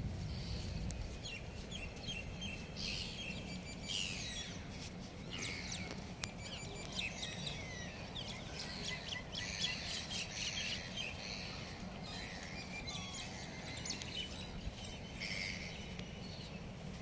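Birds calling: many short, high, often falling chirps and calls that overlap and come and go, over a steady low background noise.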